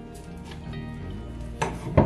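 Background music, with a spoon stirring in a saucepan of simmering huckleberry preserve; two sharp knocks against the pot near the end, the second the loudest.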